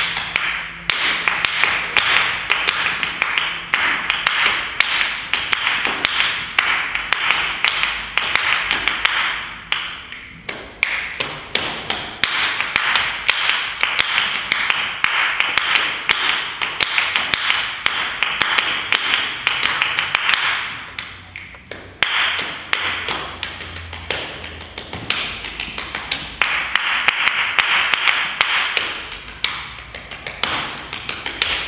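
A group clapping a bossa nova rhythm together, a dense, even stream of sharp claps. The pattern thins briefly about ten seconds in and again about twenty-one seconds in.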